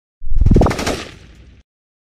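Channel-logo intro sound effect: a loud rapid run of hits that steps up in pitch, then fades away and stops after about a second and a half.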